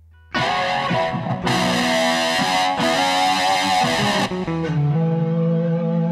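Godin LGX-SA guitar played through a Roland GR-33 guitar synthesizer, recorded direct. A bright, dense patch comes in suddenly about a third of a second in, then changes about four seconds in to lower held notes.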